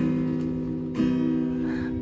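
Acoustic guitar strummed twice, about a second apart, each chord left to ring.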